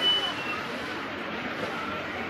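Busy supermarket ambience: a steady wash of shoppers' background chatter and store noise, with a short high electronic beep right at the start.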